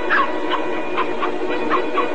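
Cartoon puppies yipping and whimpering in several short, high cries about half a second apart, over film music with held notes.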